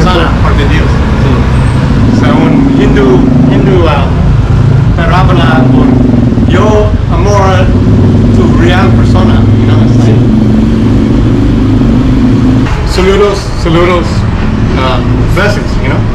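A man talking in bursts over a steady low engine hum from a road vehicle. The hum stops about thirteen seconds in.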